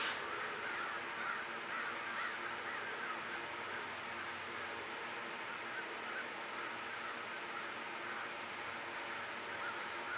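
Outdoor ambience: a bird calling over and over, clearest in the first few seconds and then fading, over a faint steady hum.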